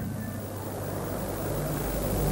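Steady low electrical hum with hiss from an old concert recording, in a pause with no singing.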